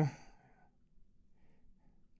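The tail of a drawn-out spoken "uh" fades out just after the start. It is followed by near silence with faint breathing.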